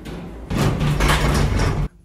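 Lift's sliding steel doors in motion: a steady low hum with a rushing noise that starts about half a second in and cuts off abruptly just before the end.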